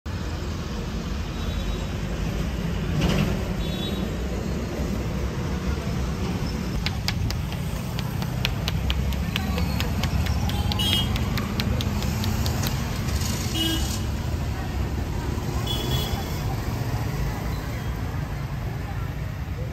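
Steady roadside traffic rumble, with a run of quick sharp slaps, a few a second, from about seven seconds in for some six seconds: a barber's hands striking the scalp during a head massage.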